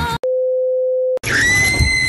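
A steady pure beep tone lasting about a second that cuts off abruptly. A high-pitched scream follows, starting just over a second in and held on one note.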